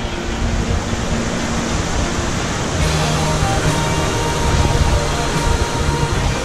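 Steady roar of Iguazu Falls' rushing and falling water, with held musical notes from the background song underneath.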